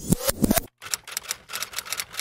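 Typewriter sound effect: a rapid run of key clicks, loudest and densest in the first half-second, then a steady patter of several clicks a second.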